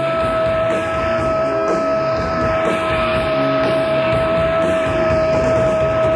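Live noise-punk rock band playing, with one long steady high note held over the changing bass and guitar notes throughout, sliding down in pitch just at the end.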